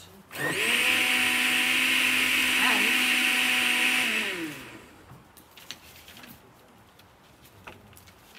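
Countertop blender motor running at a steady speed for about four seconds, then switched off and winding down with a falling whine.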